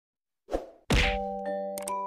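Intro logo sound effects: a short burst of noise, then a loud hit just before a second in, followed by ringing, chime-like notes struck one after another.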